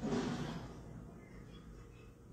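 A woman's voice trailing off into a soft, breathy exhale, fading within about a second to quiet room tone.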